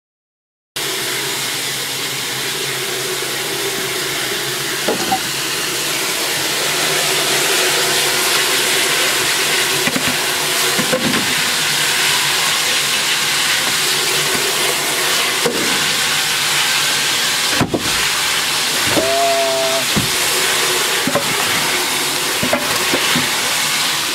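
Steady rushing hiss of a wood fire burning under strong draft in the open firebox of steam locomotive 232. It starts just under a second in, with a few faint knocks along the way.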